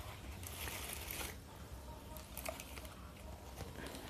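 Faint rustling of cellophane-wrapped offerings being handled, strongest in the first second or so, with a few light ticks later, over a low steady hum.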